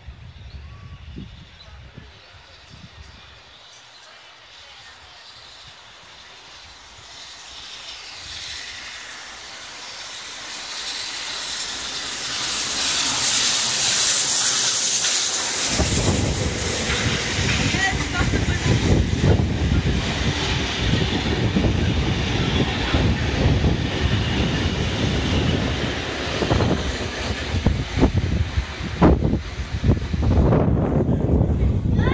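Heritage train of 36 class steam locomotive 3642 and diesel FL220 approaching and passing close by. A high hiss builds and grows loud as it nears. About halfway in, a loud rumble with rapid clicking of wheels over the rails takes over as the locomotive and carriages go by.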